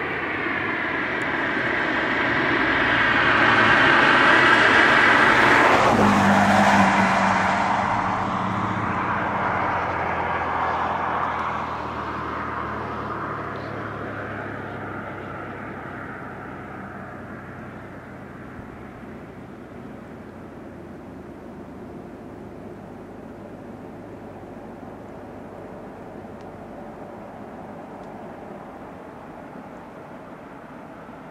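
A car passes by on the road: its tyre and engine noise builds to its loudest about five seconds in, drops in pitch as it goes past, and fades away over the next ten seconds, leaving a steady background rush.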